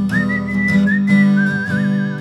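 A person whistling a melody with vibrato over a strummed acoustic guitar, the whistle sliding up into a higher held note and then back down in pitch.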